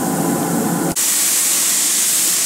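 A steady mechanical hum with several held tones that cuts off abruptly about a second in. It gives way to the high, steady hiss of compressed air from a gravity-feed spray gun laying on a blue automotive color coat.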